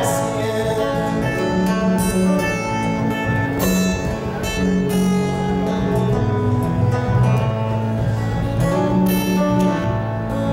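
Acoustic guitar picked in an instrumental passage of a slow folk ballad, its notes ringing on between plucks.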